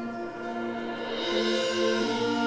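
School symphonic band playing sustained chords that swell louder about a second in.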